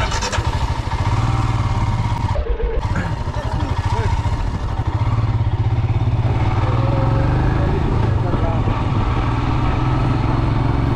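Motorcycle engine heard from the rider's seat, pulling away and then running steadily with a low rumble. The sound drops off briefly about two and a half seconds in before picking up again.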